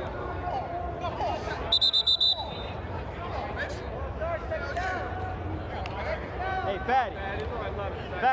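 Players' voices and shouts on a flag football field inside an inflated sports dome, with a burst of five quick high-pitched tones about two seconds in and a loud shout near the end.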